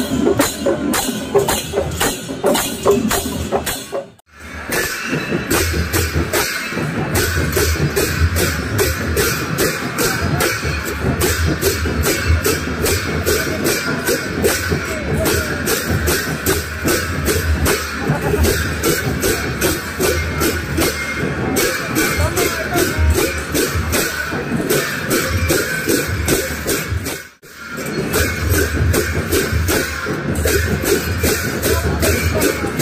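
A street drum-and-cymbal band, barrel drums and clashing hand cymbals, beating a fast steady rhythm for dancing over crowd noise. The sound drops out briefly about four seconds in and again near the end.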